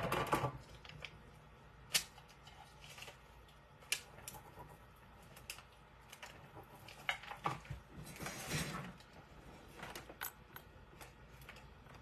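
Scattered light clicks and taps of fingernails and the transfer sheet against a metal tray as the heat transfer is pressed down and picked at, with two sharper clicks about two and four seconds in and a soft rustle near the end.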